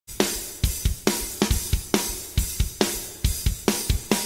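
Background music: a rock drum kit playing alone, kick and snare strikes with cymbals at a steady beat.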